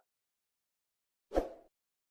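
Silence, then one short pop-like sound effect from the subscribe-button animation, about a second and a half in, dying away within a few tenths of a second.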